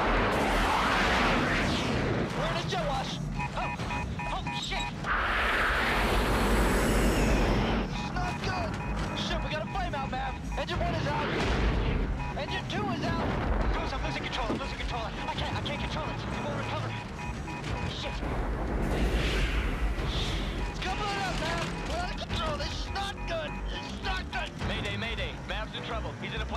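Film sound mix of a jet fighter cockpit in distress: a heavy low roar of jet engines and rushing air, with a beeping warning tone repeating through much of it, shouted voices and music over the top.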